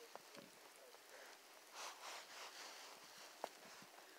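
Faint soft crunch of a boot pressing down into deep fresh snow, about two seconds in, over near silence.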